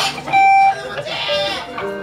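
Electric guitar played between band introductions, with one short, clear held note about a third of a second in, over scattered voices in the room.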